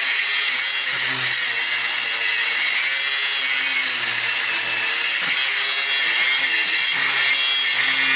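Milwaukee M18 cordless angle grinder with a cup-style wire wheel running against rusty steel seat brackets, scouring off scale and flaking rust: a steady, loud scouring noise over the hum of the motor.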